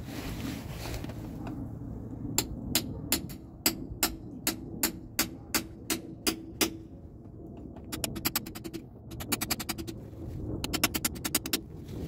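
Hammer driving a sharp punch through the bottom of a spin-on oil filter: a run of sharp metal strikes about three a second, then three quick bursts of rapid strikes, one for each drain hole.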